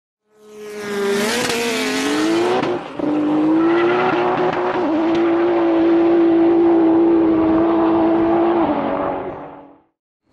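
A car engine revs up, its pitch climbing for about two seconds under a hiss that cuts off sharply. After a brief break it holds a steady high note for about six seconds, then fades out.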